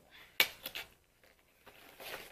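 A product box being handled and closed up: one sharp click about half a second in, a few lighter taps and rustles, then near quiet.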